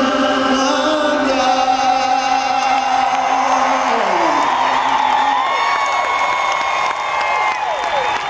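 Live R&B concert: a held, sustained sung chord that slides down in pitch about halfway through, followed by a stadium crowd cheering and whooping.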